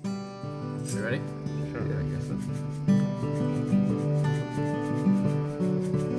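Band music comes in suddenly: guitars and bass playing slow, held chords that change every half second or so, with a wavering sliding note about a second in.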